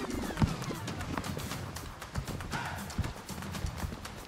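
Steps and pole plants of skiers skinning uphill on a snow track: an uneven series of short clicks and crunches.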